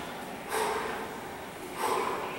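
A man breathing out hard with each pull-up: short forceful breaths, one about half a second in and another near the end.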